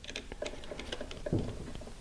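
Faint, irregular small clicks and scrapes of a screwdriver turning the brass terminal screw on a dimmer switch, clamping a straight wire inserted behind the screw's tab.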